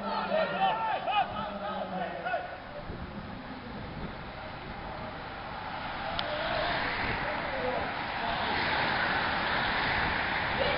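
A pack of racing bicycles passing close by, a rush of tyres and wheels that builds from about halfway and is loudest near the end. Spectators' voices are heard in the first couple of seconds.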